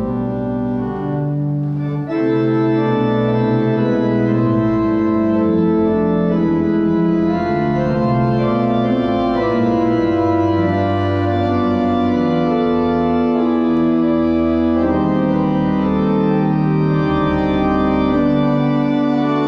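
Church pipe organ playing slow, sustained chords that change every second or two; it swells fuller about two seconds in.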